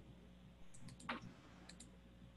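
A few faint, sharp little clicks in two quick clusters, three about three-quarters of a second in and two more near the end, over a faint steady room hum.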